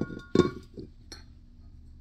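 A clink of a glazed ceramic candle holder being handled: a sharp knock with a brief ring about a third of a second in, then a faint tap about a second later.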